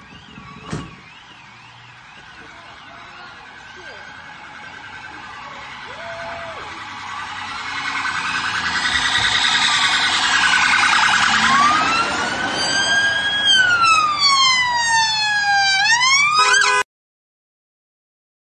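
Emergency vehicle siren drawing near, with a faint fast warbling tone at first, growing much louder over several seconds, then a slow wail that rises and falls in pitch. The sound cuts off abruptly near the end.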